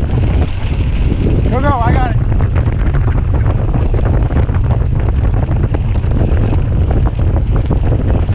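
Wind buffeting the camera microphone on a mountain bike moving along a dirt trail, with constant small clicks and rattles from the bike over the bumps. A short wavering, voice-like call about one and a half seconds in.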